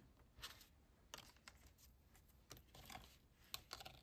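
Near silence with a few faint, scattered taps and rustles: a wooden button and paper envelopes handled on a cutting mat.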